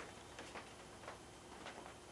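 A quiet room with a few faint, light ticks.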